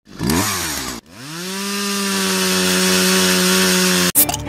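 A two-stroke chainsaw engine, converted to power a remote-control powerboat, running at high speed. It revs unevenly for about a second and drops out abruptly. Then it climbs in pitch and holds a steady high whine.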